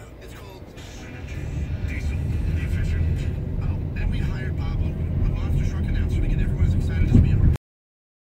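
A crowd of cyclists riding past: indistinct voices and chatter over a low rumble, with music in the background, growing louder from about a second in. The sound cuts off abruptly near the end.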